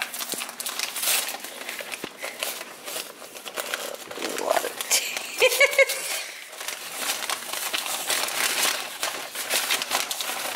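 Paper food wrapping being torn open and unfolded by hand, with continuous crinkling and rustling. About halfway through, a brief high voice sounds over it.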